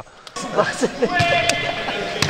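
Live sound of a futsal match in an indoor sports hall: players' voices calling out, a held call from about a second in, and one sharp ball strike about one and a half seconds in.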